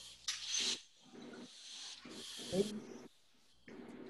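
Faint, broken voice fragments and two short breathy hisses over a video-call line, between speakers.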